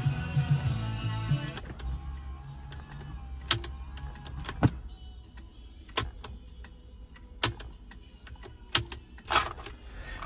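A car radio playing music cuts off about a second and a half in as a cassette is pushed into the 1981 Datsun 280ZX Turbo's factory cassette deck. Then several sharp separate clicks from the deck's buttons and the tape being ejected, with no music coming from the tape: the cassette player does not work.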